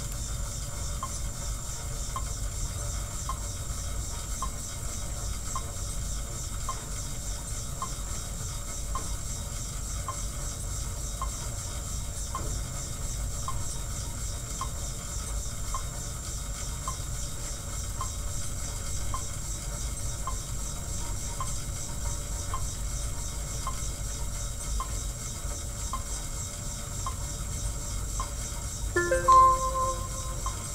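Monark cycle ergometer being pedalled at a steady cadence: a steady low whir with a light tick about once a second. A short, louder pitched sound comes about a second before the end.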